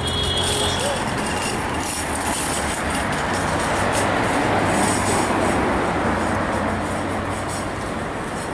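Road traffic noise from a vehicle going by on the street, a steady rushing that swells about halfway through and eases off toward the end.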